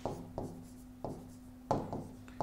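Stylus writing numbers on an interactive touchscreen board: a handful of sharp taps as the pen touches down between short strokes, over a faint steady hum.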